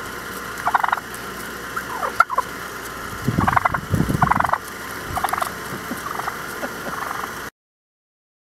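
Wild turkey tom gobbling again and again at close range, a string of short rattling gobbles about a second apart. The sound cuts off suddenly about seven and a half seconds in.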